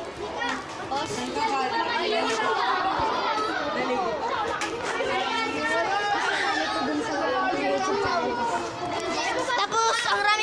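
Many children talking and calling out over one another: a steady, overlapping group chatter of kids' voices with no single speaker clear.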